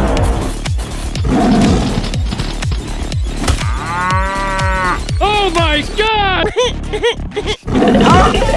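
Cartoon cow mooing: one long moo about halfway through, then a quick string of shorter moos, over background music.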